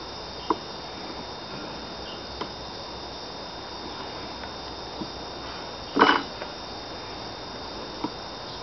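Metal hive tool prying at a frame stuck in a wooden beehive box: a few light clicks and scrapes, and a short squeaky creak about six seconds in as the frame works loose, over a steady insect hum.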